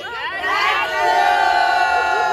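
A group of women shouting together in a cheer, their voices rising and then holding one long shout from about a second in.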